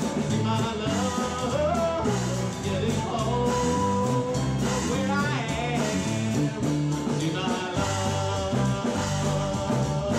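Live band playing a bluesy rock song: strummed acoustic guitar, bass and drums with a steady beat, and a lead melody line on top with gliding and held notes.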